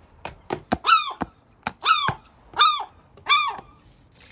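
Herring gull giving four short, arched cries about a second apart, preceded by a few sharp taps.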